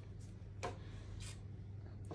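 Quiet room tone: a low steady hum with a few faint, brief soft sounds, the clearest about half a second in.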